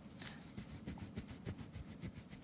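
A terry cloth rubbing quickly back and forth over a Seiko SNZG's stainless steel watch case, hand-polishing it with metal polish. It is a quiet, fast run of soft scrubbing strokes.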